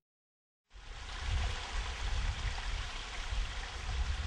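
Water running in a narrow open channel: a steady rushing hiss with a low rumble underneath, cutting in suddenly just under a second in.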